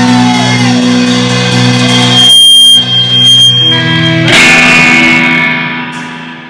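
Live rock band with distorted electric guitars and bass holding loud sustained chords at the close of a song. About two and a half seconds in the low end drops out under a steady high whine. A final chord is struck a little after four seconds in and rings out, fading near the end.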